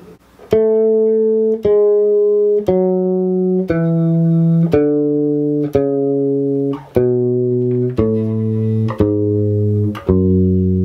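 Electric bass guitar playing a two-octave A major scale descending from the high A: nine slow plucked notes, about one a second, each a step lower than the last.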